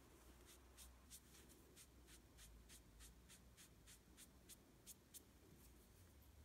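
Very faint, quick rubbing strokes, about three or four a second, of a cloth pad wiping freshly painted hair on a vinyl doll's head to lighten it; the strokes stop near the end.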